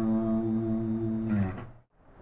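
Stratocaster-style electric guitar ending a minor pentatonic scale sequence on one held low note. The note rings steadily, then fades away about a second and a half in, dropping to near silence.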